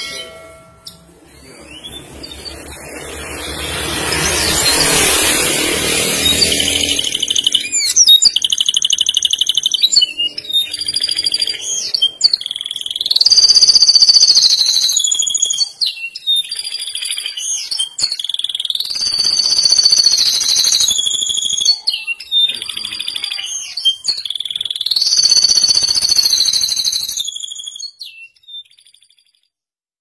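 Domestic canary singing long, rapid high-pitched rolls that slide up and down in pitch, phrase after phrase, stopping just before the end. A rushing noise swells and fades in the first few seconds before the song begins.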